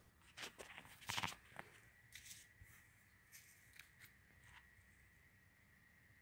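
Faint clicks and rustles in the first second and a half, then a few scattered faint clicks over near silence, with a faint steady high tone coming in about two seconds in.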